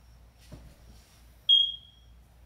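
A single short, high electronic beep about one and a half seconds in, fading quickly, preceded by a soft thump about half a second in.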